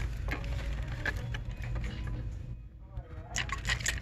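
Hard plastic snowflake ornaments clicking and rattling against each other as one is handled and taken off the display, with a quick run of clicks near the end, over a steady low store hum.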